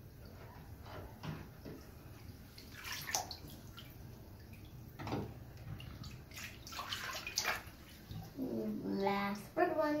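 A hand swishing and splashing through bathwater in a tub, in several separate short swishes.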